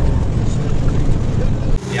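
Cargo truck's engine and road noise heard inside the cab while driving, a loud, steady low rumble. It cuts off suddenly near the end.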